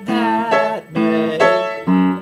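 Upright acoustic piano played in an alternating left–right pattern: a low root note, then a right-hand three-note chord, about two to three strokes a second, on the A to F-sharp-minor verse chords.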